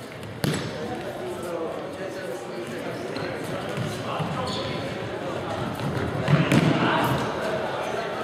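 Football kicked and bouncing on a wooden sports-hall floor during a futsal game, with a sharp knock about half a second in and more knocks around six seconds in, against players' voices echoing in the large hall.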